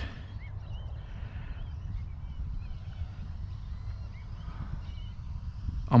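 Quiet outdoor ambience: a low, steady rumble with faint, scattered bird chirps.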